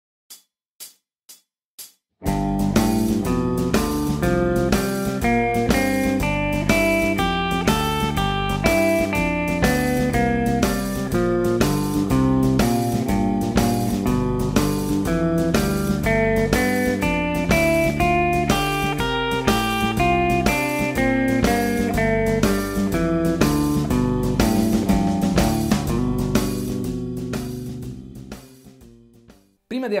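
Guitar playing the G major and G minor pentatonic scales up and down in steady quarter notes over a 12-bar blues backing track in G with drums. It switches between major and minor pentatonic with each chord, major on the I chord and minor on the IV and V. Four short count-in clicks open it, and the music fades out near the end.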